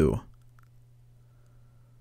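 A few faint computer-keyboard clicks as a short bit of code is typed, over a steady low electrical hum.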